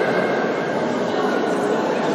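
Steady, echoing din of a crowd of spectators in a large sports hall, with a long, steady high tone held over most of it.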